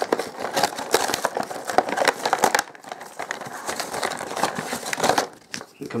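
Clear plastic blister packaging and its cardboard backing crinkling and tearing as hands pull a toy package open. The crackling is dense and eases off shortly before the end.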